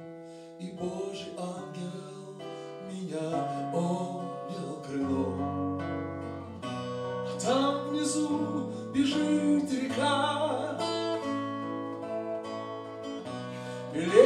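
Guitar playing an instrumental passage of picked and strummed chords between sung verses, the notes ringing on with a few stronger strums.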